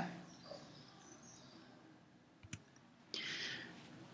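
Near silence broken by one sharp click about halfway through, then a brief soft hiss near the end.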